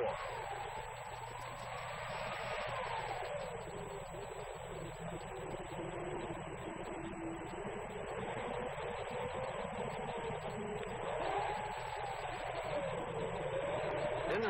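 Hurricane-force wind: a steady rushing noise with a howling whistle that slowly rises and falls in pitch.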